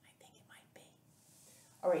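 Faint whispering: a few short, soft syllables under the breath, then a woman speaks aloud near the end.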